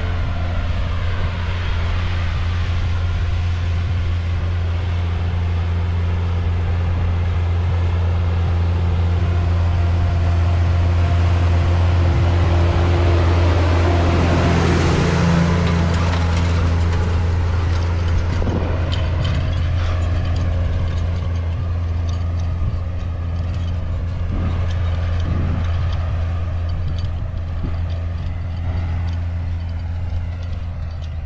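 Case Puma 155 tractor's diesel engine running steadily under load as it pulls a spring-tine seedbed cultivator through the soil, growing loudest about halfway through as it comes closest. Scattered light clicks are heard in the second half.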